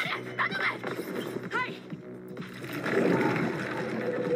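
Anime episode soundtrack: background music with held notes, under short high rising voice calls about half a second and a second and a half in, and a noisy swell building near the end.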